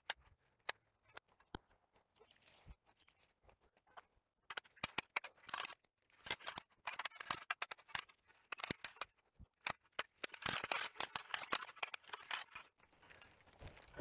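Hand-crank winch raising a megatree's pixel-strip hoop up its pole: ratchet clicking as the crank turns. There are a few single clicks at first, then quick runs of clicks from about four seconds in.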